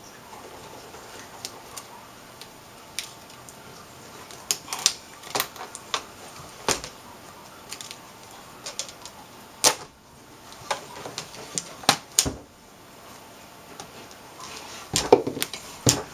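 Scattered light clicks and taps, irregular and spaced a second or so apart, with a denser cluster near the end, as gloved hands handle a metal-backed LCD panel and press its backlight wire into place.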